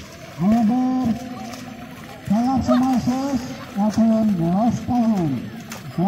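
A voice in four drawn-out phrases, each about a second long, sliding up and down in pitch.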